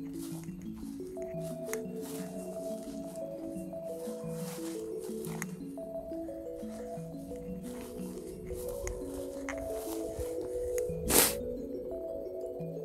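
Slow instrumental background music of held notes that change step by step, with short gusts of wind buffeting the microphone and one loud gust about eleven seconds in.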